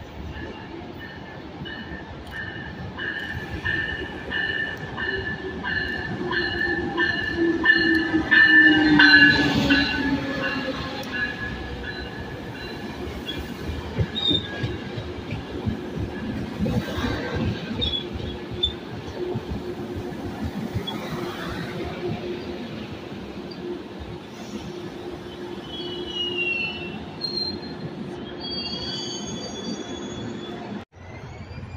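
COASTER bilevel commuter train pulling in alongside the platform: a pulsing ringing over the first ten seconds, a tone that falls in pitch as the front passes about nine seconds in, which is the loudest moment, then steady rolling of the coaches, with high wheel squeal near the end as the train slows into the station.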